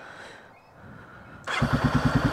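1994 Honda XR650L's single-cylinder four-stroke engine starting about one and a half seconds in, catching at once and settling into an idle with a fast, even pulse.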